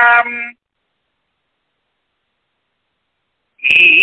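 A man's chanted Sanskrit hymn recitation: a held note ends about half a second in, followed by about three seconds of dead silence, and the chanting starts again near the end.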